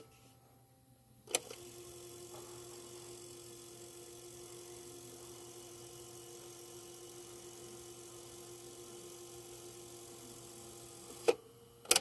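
Electronic keyboard sounding one steady held note for about ten seconds, begun by a sharp click about a second in and cut off by two sharp clicks near the end.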